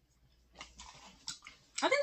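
Someone chewing soft, chewy cherry candies, faint wet mouth sounds with a few clicks.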